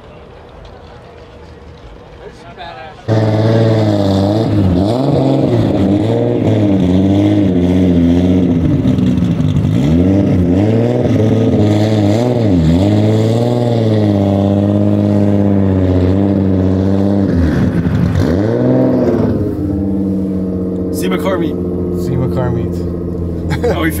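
Car engines revving over and over, pitch climbing and dropping, loud from an abrupt start about three seconds in after a quieter stretch. Near the end it settles to a steady engine drone.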